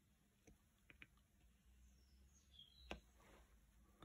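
Near silence: room tone with a few faint clicks, the clearest about three seconds in, and faint high chirps just before it.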